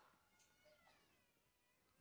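Near silence, with only a very faint, drawn-out sliding tone.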